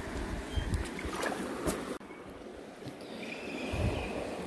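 Shallow creek water running over stones, with a few light clicks and knocks of handling. The sound drops suddenly about halfway through, then slowly rises again.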